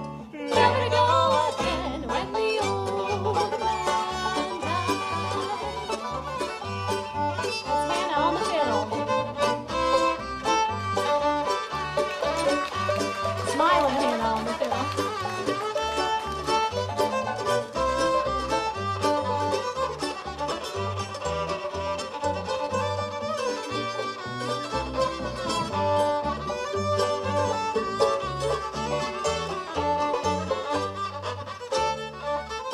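Acoustic bluegrass band playing an instrumental break, the fiddle leading the melody over banjo, mandolin and a plucked upright bass keeping a steady beat.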